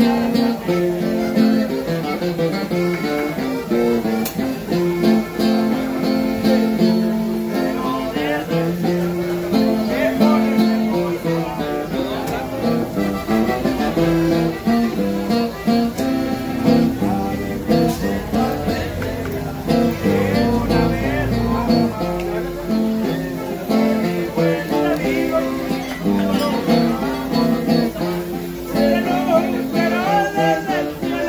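Live music from a button accordion and an acoustic guitar playing a song together, with two men singing.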